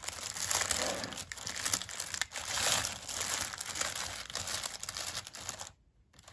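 Heaped foil-wrapped chocolates crinkling as hands stir and rummage through them in a bowl: a dense, uneven, crackly rustle that stops abruptly near the end.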